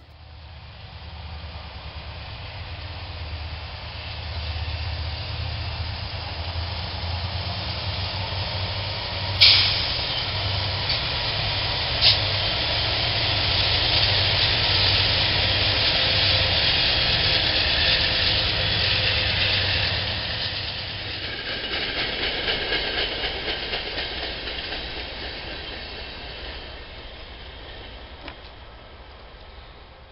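Norfolk Southern freight train passing close behind GE diesel locomotives: a low engine drone under growing steel wheel and rail noise, with two sharp clanks about ten seconds in. The sound changes about three-quarters of the way through and fades as another train approaches.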